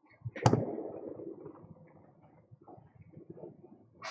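A sharp knock about half a second in, with a short ringing tail, followed by small scattered handling and rustling sounds and a brief hiss at the very end.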